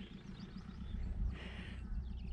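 Faint birdsong: small birds chirping, ending in a quick run of short repeated notes, over a steady low rumble.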